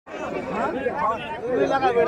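Crowd of spectators chattering and calling out, with many voices overlapping.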